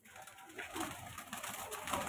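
A flock of domestic pigeons in a wire loft, cooing, with wings flapping as some birds take off and fly about inside the cage.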